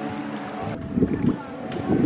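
A boat engine running steadily, with wind buffeting the microphone. The sound changes abruptly partway through, and rough gusts of wind noise follow.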